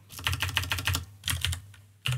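Typing on a computer keyboard: a quick run of keystrokes, a short pause, then a few more keystrokes about a second and a half in.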